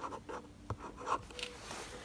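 Marker pen writing on a hard plastic box lid: a run of short, irregular pen strokes with a few small clicks.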